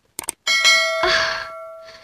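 Two quick mouse-click sounds, then a bell ding about half a second in that rings on and fades over about a second and a half: the sound effect of a subscribe-button animation clicking the notification bell.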